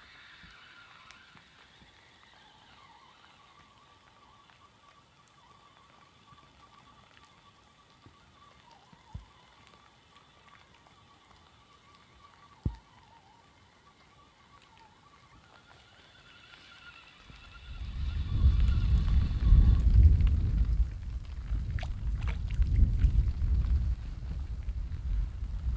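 A spinning reel whirs faintly and steadily as feeder line is wound in against a bent rod, with two sharp clicks along the way. About two-thirds through, strong wind gusts hit the microphone with a loud rumble that drowns out everything else.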